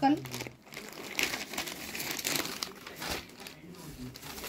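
Crinkling and rustling as a folded parrot-green suit is handled and unfolded onto a wooden table, in irregular bursts.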